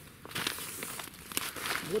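Crinkling, rustling handling noise close to the microphone as a person in a padded winter jacket moves past, with a few small crunches.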